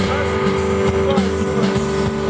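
Live blues-rock band playing: electric guitar, bass guitar and drum kit, with a sustained note held under short bent guitar lines.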